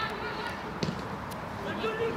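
Distant voices of players and spectators across an open football pitch, with one sharp thud just under a second in, typical of a football being kicked.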